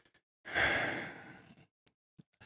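A man's sigh: one breathy exhale about half a second in that fades away over about a second.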